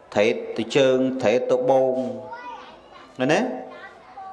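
Speech only: a man preaching in Khmer, his voice rising and falling expressively.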